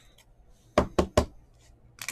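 Three quick, sharp knocks on the table, about a fifth of a second apart, as cards are handled.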